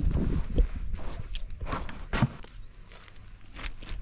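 Footsteps crunching over a beach of loose shells and sand, a few uneven steps that grow quieter in the second half.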